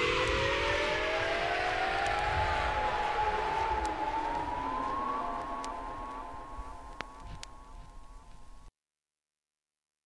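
Closing bars of a 1990 electro record played from vinyl: siren-like synthesizer tones glide against each other, one set rising and one falling, while the whole sound fades out, with a few crackle clicks from the vinyl. It cuts off to silence a little before the end.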